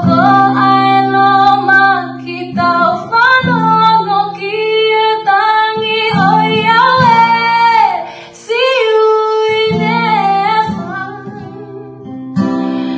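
A woman singing a Tongan gospel song in long, held phrases over a strummed acoustic guitar.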